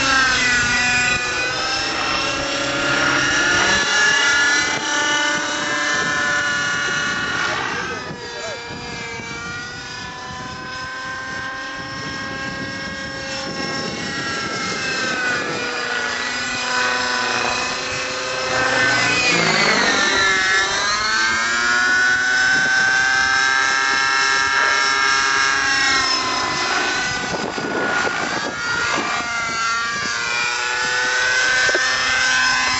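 Thunder Tiger Raptor 50 nitro RC helicopter flying manoeuvres: its two-stroke glow engine and rotors run continuously, the pitch sliding up and down as it flies. The sound is quieter for a stretch from about eight seconds in, and the pitch dips sharply and climbs again about twenty seconds in.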